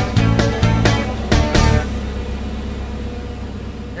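Background music with a steady beat that stops about two seconds in, leaving a quieter low hum.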